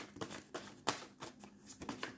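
A deck of tarot cards being shuffled by hand, in short, irregular strokes of cards riffling and tapping, several a second.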